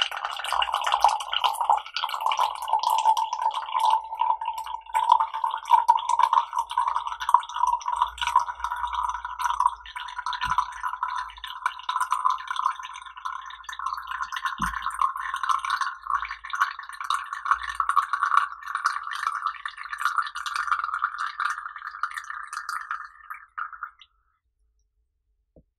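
A thin, steady stream of tea poured from a glass pitcher into a tall ribbed glass cup, trickling and splashing, its pitch rising slowly as the cup fills. The pour stops suddenly at the very end.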